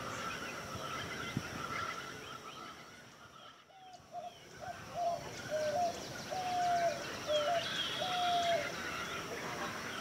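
Wild birds calling in a marsh: small birds chirp throughout over a steady high hiss. From about four seconds in, a bird gives a series of clear low cooing notes, several of them stepping up or down in pitch.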